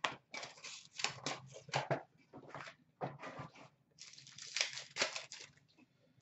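Hockey card packs being handled at a counter: packs pulled from a cardboard box and a pack wrapper torn open, with irregular crinkling, rustling and tearing in short bursts.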